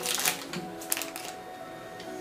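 A small jelly bean packet being handled in the hands: a few light clicks and rustles, one sharper click about a second in, over faint background music.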